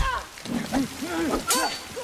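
Fighters grunting and panting with effort in a sword fight in heavy rain, with a heavy hit at the start and a sharp metallic clang about one and a half seconds in, over the steady hiss of rain.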